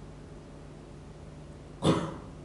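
A person coughs once near the end, short and loud, over a faint steady room hum.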